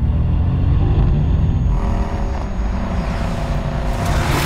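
Mercedes-AMG sports car's twin-turbo V8 engine running with a deep low note, a higher engine tone joining in about halfway through.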